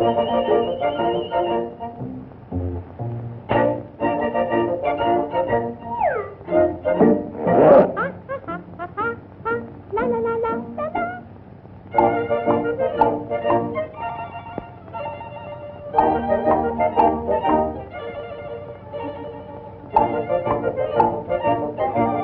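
Jazz band music from an early-1930s cartoon soundtrack, played in short phrases with brief pauses. A falling sliding tone comes about six seconds in, followed by a loud accent near eight seconds.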